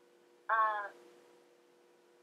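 A person's voice: one short, slightly falling utterance about half a second in, over a faint steady hum.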